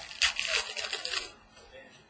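Trading cards being handled on a table: a scraping, rustling noise lasting about a second and a half, fading out before the end.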